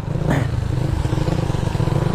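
Yamaha motorcycle engine running steadily at low speed through an open-pipe muffler, a dense, even rumble of rapid exhaust pulses.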